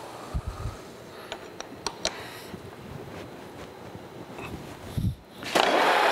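Carlton radial drill with a few light knocks and clicks as the chuck and feed handle are handled. About five and a half seconds in, a loud steady grinding noise with a slightly falling tone starts as the number 25 drill bit begins cutting into the cast-iron crossbeam casting.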